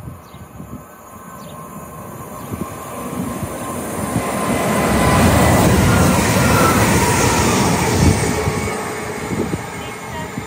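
A Great Western Railway train running past the platform. Its rumble and wheel noise build up steadily, are loudest from about five to eight seconds in, then die away.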